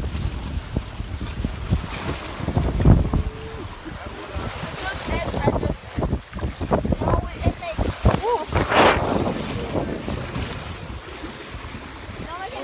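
Wind buffeting the phone's microphone and waves washing against the hull of a sailboat under way, with a louder rush of water a little before nine seconds.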